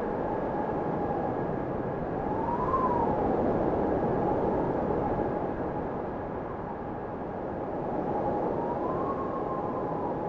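Quadcopter drone's propellers humming with a steady whine. The pitch swells up and falls back twice, about three seconds in and again near the end, as the motors change speed.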